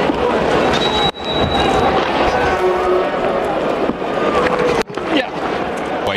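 Stadium crowd noise at a cricket match, a dense mix of cheering and shouting voices, broken by two abrupt cuts, about a second in and near five seconds.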